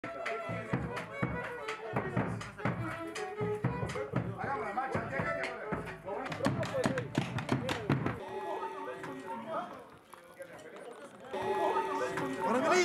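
A stick-beaten hand drum (caja) struck irregularly among voices and music for about eight seconds, then a quieter stretch with a few held notes that swells again near the end.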